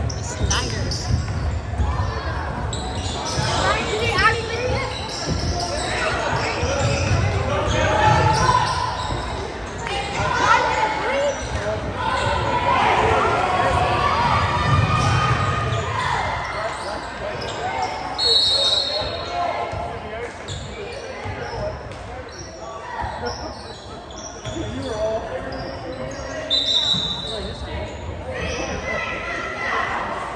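Basketball bouncing on the hardwood court of a large gym, under the chatter of spectators in the stands. Near the end two brief high tones sound.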